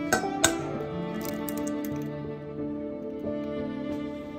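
Soft background music, with two sharp taps in the first half-second as an egg is cracked against the rim of a stainless steel mixing bowl, then a few faint clicks of eggshell.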